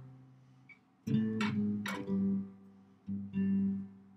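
Benedetto archtop jazz guitar playing picked octave shapes on two strings. One set of notes starts about a second in and another about three seconds in, each left to ring.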